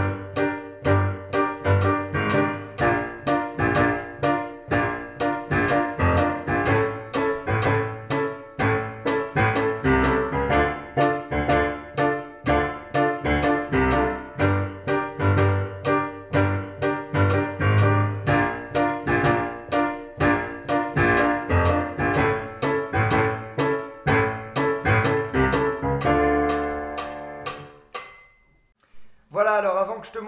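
Digital piano playing a D minor, G minor, B-flat major, A major chord progression with both hands, the left hand offset from the right, while the piano's metronome clicks steadily at 124 beats per minute. Near the end a final chord is held and dies away.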